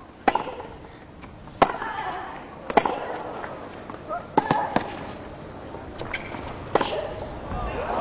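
Tennis rally: racket strikes on the ball about every second or so, several followed by a player's short grunt. The point ends with a drop shot.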